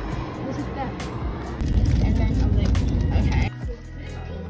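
Background music over street traffic noise; a louder low rumble of a passing road vehicle swells about one and a half seconds in and cuts off abruptly near the end.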